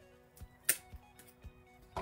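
Background music with a soft steady beat, under a short sharp click about two-thirds of a second in and another at the end, from the back being pulled off a rhinestone brooch.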